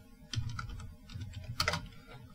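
Typing on a computer keyboard: a quick, irregular run of key clicks, with one harder keystroke about three-quarters of the way through.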